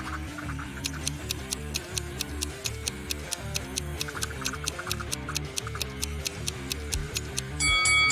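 Countdown timer ticking about four times a second over light background music. Near the end a bell-like chime rings as the countdown finishes.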